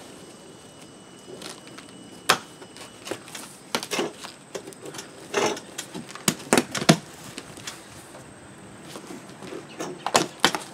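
A knife slitting the packing tape and cardboard of a large shipping box: a string of short, sharp rasps and crackles, loudest a couple of seconds in and again around six to seven seconds, with quieter spells between.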